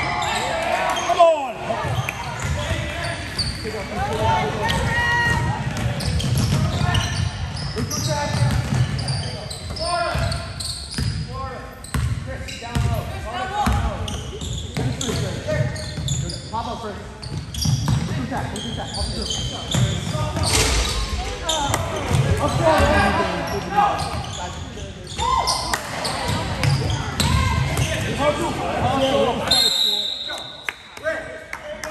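A basketball bouncing on a hardwood gym floor during play, amid indistinct shouting from players and spectators.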